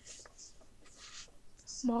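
Faint rustling and sliding of paper against card as a sewn text block of folded paper is lifted and set down on the card, in a few short soft brushes.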